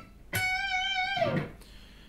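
Electric guitar playing a single high note, held for about a second, then falling in pitch and dying away.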